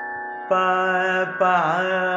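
A man singing Carnatic sargam syllables over a steady drone: a held "pa" begins about half a second in, and a second "pa" follows about a second and a half in, ornamented with a gamaka that dips and rises in pitch. He is singing the opening swaras of the varnam in raga Suddhadhanyasi.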